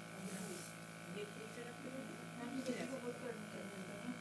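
Small airbrush makeup compressor humming steadily, with a short hiss of sprayed air from the airbrush about half a second in.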